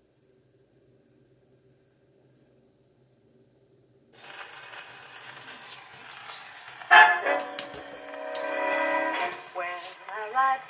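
Acoustic Victrola phonograph playing a 1945 Columbia 78 rpm shellac record. For about four seconds there is only a faint hum; then the needle's surface hiss begins, and about seven seconds in the dance band's fox-trot introduction starts with a loud chord and held notes.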